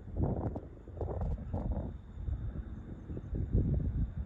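Wind buffeting the microphone: an uneven low rumble that swells and drops in gusts.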